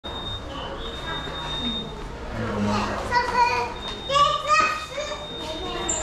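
Chatter of several voices, with high-pitched excited voices calling out between about three and five seconds in, over a thin, steady high whine.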